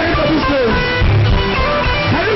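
Loud band music led by electric guitar over bass and a recurring low beat: the church's deliverance music played during the ministration.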